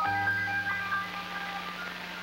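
Closing theme music: a final chord sounds at the start and fades away, leaving a steady hiss.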